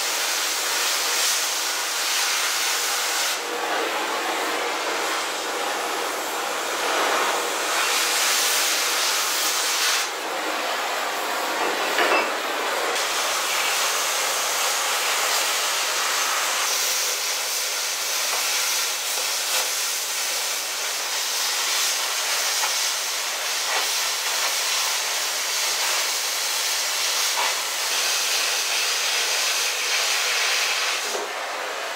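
Oxy-fuel cutting torch cutting through steel, a steady hissing roar of the gas jet that changes tone abruptly a few times.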